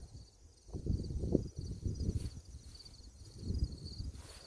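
Crickets chirping, a faint high rapid pulsing that runs on steadily, with irregular low gusts of wind buffeting the microphone.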